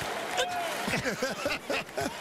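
Men laughing, a run of short chuckles, over steady arena background noise.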